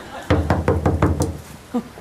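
Rapid knocking on a door, a quick run of about seven knocks in about a second.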